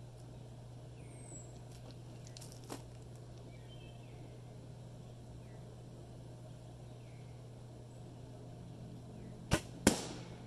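Traditional bow shot: a sharp snap as the bowstring is released, then about half a second later a louder crack as the arrow strikes and pops the balloon target. A steady low hum runs underneath.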